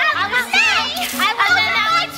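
Several stage actors' voices shouting excitedly over one another in a jumbled classroom commotion, pitches swooping sharply up and down, with no clear words.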